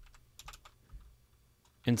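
A few faint, scattered keystrokes on a computer keyboard as code is typed and edited.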